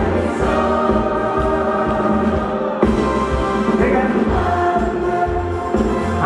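A live band playing a song while several voices sing together, over steady bass.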